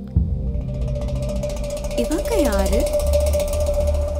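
Suspense film score: a low drone and a steady held tone under a fast, faint ticking texture. About two seconds in, a pitched sound slides down and back up.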